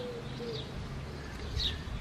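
Small birds chirping: short, high, falling chirps about once a second, with a faint low cooing note near the start.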